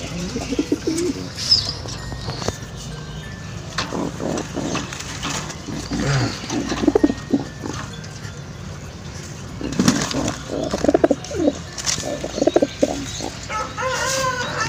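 Pigeons cooing in repeated low pulses, loudest near the end, over rustling of nest straw and light knocks as an egg is put back into a woven bamboo nest basket.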